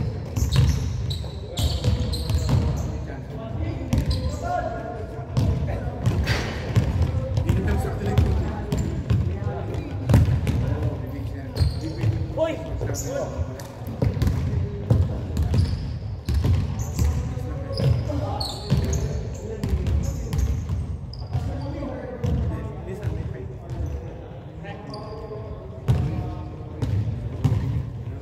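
Basketball bouncing on a hardwood gym floor, with players' voices calling out, echoing in a large gym.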